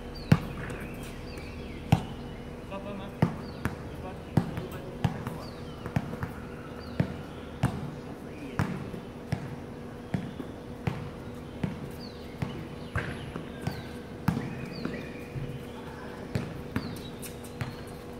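A basketball bouncing on an outdoor hard court: a few single bounces at first, then steady dribbling, about one bounce every two-thirds of a second. A steady low hum runs underneath.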